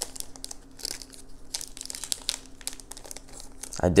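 A stack of cardboard trading cards being handled and fanned out by hand, with plastic crinkling: a run of small, irregular crackles and clicks.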